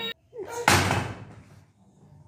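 A single loud bang about two-thirds of a second in, an impact that dies away over about half a second.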